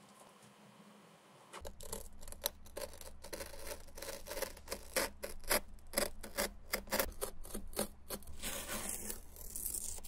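Snap-off utility knife blade cutting along masking tape on a sneaker's heel, starting after a quiet second and a half, in a run of short, sharp strokes about two or three a second. Near the end the strokes give way to a longer rasp as the trimmed strip of tape is pulled away.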